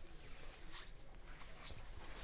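Low steady background hum with a few brief soft rustles, about a second in and again near the end.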